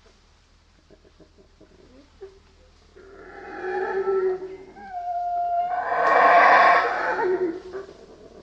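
Howler monkey howling: a series of calls that begins about three seconds in, swells to its loudest about six to seven seconds in, and dies away just before the end.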